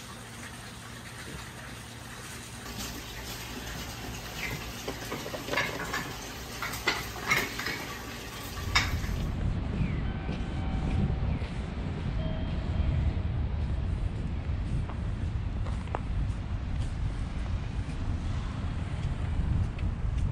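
Crab legs sizzling on a gas-fired grill, with metal tongs clicking against the wire grate several times in the middle. About nine seconds in this gives way to a steady, louder low rumble outdoors.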